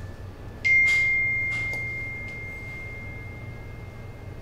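A single bright phone notification ding, a little over half a second in, that rings on one pure tone and fades slowly over about three seconds. A few faint soft clicks sound around it.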